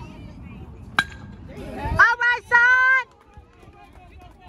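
A baseball bat hitting a pitched ball, a single sharp crack about a second in, followed by a spectator's loud, drawn-out shout in two parts lasting about a second, the loudest sound.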